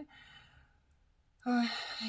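A woman's soft breath out in a pause between words, then a drawn-out hesitation sound 'eh' about a second and a half in.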